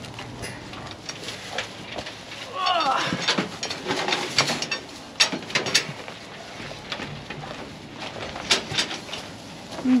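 Metal clanks and rattles from the wire panels and grafting headgate of a goat pen while a doe goat is caught and handled into it, with several sharp knocks in the second half. A short bleat that rises and falls comes about three seconds in.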